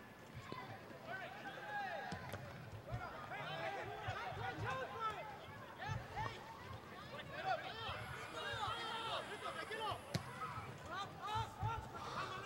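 Faint, distant shouting and calling from several people at once, players and spectators across an open soccer field, with a few short thuds of the ball being kicked.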